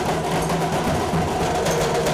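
A street drum band playing: large bass drums and smaller snare-type drums beaten with sticks in a steady, dense rhythm.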